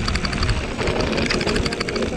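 Mountain bike riding down a rough dirt trail: wind buffeting the handlebar camera's microphone as a low rumble, with continual rattling and clattering of the bike over the ground.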